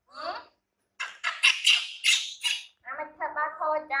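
Baby macaque screeching: a short call at the start, then a loud, harsh run of rapid high-pitched calls about a second in. A woman's voice follows near the end.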